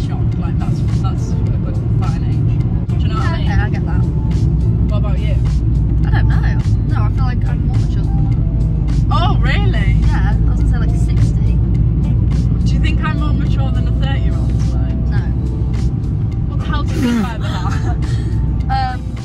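Music playing over the steady low rumble of road and engine noise inside a moving car's cabin, with women's voices and laughter on and off throughout.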